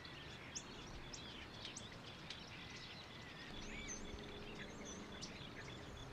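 Faint outdoor nature ambience: a steady low hiss with scattered short bird chirps.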